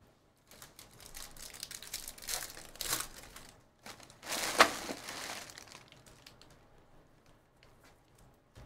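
Crinkling and tearing of a 2023 Bowman Draft Jumbo pack's wrapper as it is ripped open, with the loudest, sharpest rip about four and a half seconds in, followed by the faint flicking of cards being thumbed through.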